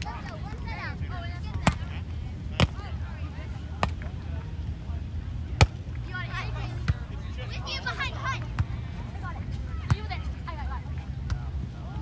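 Sharp slaps of hands striking a beach volleyball during a rally, about eight spread through the stretch, the loudest about halfway through. Distant voices of spectators and a steady low rumble run underneath.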